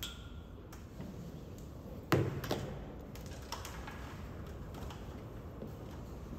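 Tie-down rope being pulled free of the wing strut's tie-down fitting: a light metallic clink at the start, a loud knock about two seconds in followed quickly by a second, then a few faint taps.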